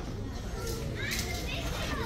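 Children's voices in the background, faint high-pitched calls or chatter that rise and fall, starting about halfway through, over the low hum of a large store.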